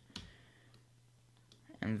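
A single short computer mouse click shortly after the start, with a fainter tick a little later, over a low steady electrical hum.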